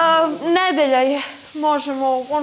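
A voice loudly singing a sing-song chant in held, gliding notes, breaking off briefly and starting again near the end, over the hiss of a tap running into a sink.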